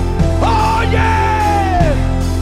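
Live church band music with a man's voice shouting one long held cry into a microphone over it; the cry starts about half a second in and falls away near the end.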